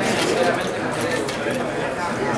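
Several people talking at once: steady crowd chatter.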